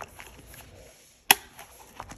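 Metal six-ring mechanism of an A6 binder snapping with one sharp click a little past halfway, amid faint handling of the binder.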